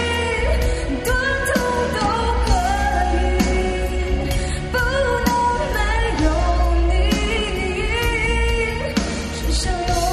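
Live pop song: a woman singing a melody into a handheld microphone, backed by a band with electric guitar, keyboard, bass and drums keeping a steady beat.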